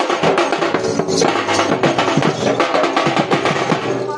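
Two-headed barrel drums (dhol) beaten hard in a fast, dense run of strokes, the folk-dance drumming loud and close.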